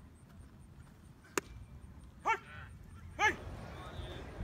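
A single sharp crack of a baseball impact about a second and a half in, then two short, high-pitched calls about a second apart, the second the loudest.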